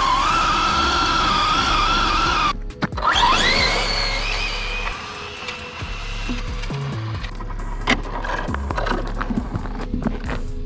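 Brushless electric motor of a 1/10 Losi 22S no-prep RC drag car whining at launch: the pitch climbs steeply about three seconds in, then levels off and fades as the car runs away down the street. Background music plays throughout.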